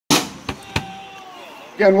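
A live band's gear between songs: a loud crash right at the start that dies away quickly, two sharp knocks, and a thin ringing tone fading out. A man's voice then starts talking through the PA microphone near the end.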